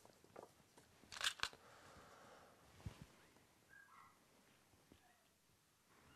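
Near silence with a few faint clicks and a soft rustle as fly-tying thread and floss are handled at the vise, then one low thump.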